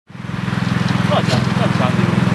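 An engine running steadily with an even low drone that fades in at the start, with faint voices over it.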